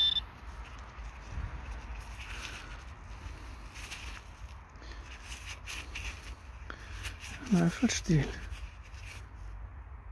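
Gloved hand sifting through dry, crumbly field soil while searching for a metal-detector target: soft scattered rustles and crunches of earth. About seven and a half seconds in, a brief voiced murmur from a person stands out above the rustling.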